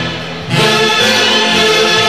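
Orquesta típica of saxophones, clarinets and Andean harp playing a tunantada, the many reed instruments sounding together. The music drops back briefly at the start, and the full ensemble comes back in about half a second in.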